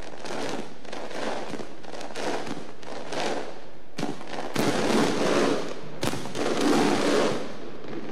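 Aerial fireworks shells bursting: a few sharp bangs, about 4 and 6 seconds in, with dense crackling from the glittering stars that swells loudest in the second half.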